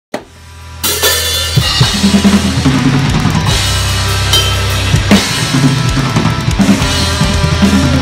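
Acoustic drum kit with Zildjian cymbals played hard along to a metalcore recording: kick, snare and cymbal hits over the band's guitars and bass. After a short swell, the full song and drums come in together just under a second in and keep going loud.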